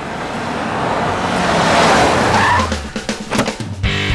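Tata Spacio Gold jeep driving in and skidding to a stop on a dirt yard. The engine runs under a rising hiss of tyres that peaks about two seconds in, and the engine note drops away about three seconds in.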